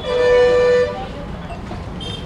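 A vehicle horn honks once near the start, one steady single-pitched note lasting just under a second.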